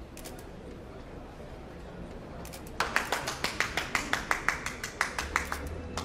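Hand clapping from a few people, starting about three seconds in as quick, distinct claps about five a second, then thinning out near the end.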